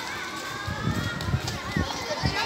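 Children calling out during a street football game, one long high call in the first second, over running footsteps on pavement.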